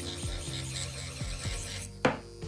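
Background music with a deep, sliding bass beat, over the high, even whir of an electric nail drill with a sanding bit buffing the surface of a stiletto nail to take off its shine.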